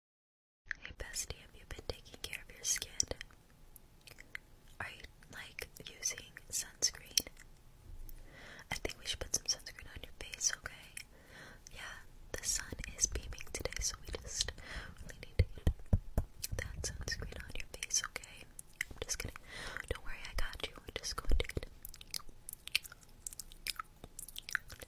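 Close-miked ASMR mouth sounds: wet clicks and smacks with whispering, many quick sharp clicks in a row. They begin about a second in, after a brief silence.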